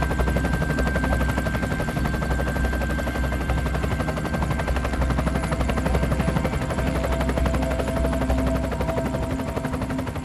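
Loud heavy machinery running steadily, with a fast, even rattle over a deep rumble and a thin steady whine on top.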